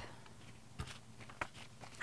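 Faint rustle of folded construction paper being opened out by hand, with two soft taps.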